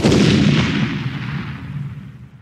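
Closing hit of a heavy rock logo sting: one loud booming impact at the start that rings out and slowly fades away.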